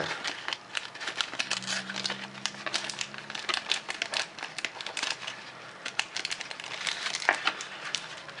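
Stiff clear plastic blister packaging and a foil booster pack crinkling and crackling in irregular, dense bursts as hands twist and pull the pack out of the blister.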